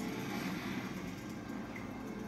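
A TV documentary's soundtrack heard through the set's speakers in a small room: a low, steady underwater-style rumble, with the last held music notes fading out at the very start.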